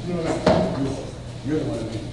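Indistinct voices of people talking close to a podium microphone, with one sharp knock about half a second in.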